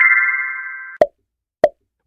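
Synthesized chime sound effect marking the end of a quiz countdown: a quick rising run of notes held as a bright tone that fades out over the first second. It is followed by two short pops, about a second and a second and a half in.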